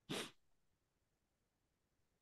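One short, sharp breath, a quick hiss right at the start, then near silence.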